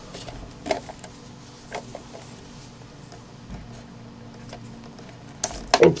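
Small clicks and handling noises as the power lead is pulled from a brushless gimbal controller board, over a faint steady hum. Near the end comes a louder clatter of quick knocks.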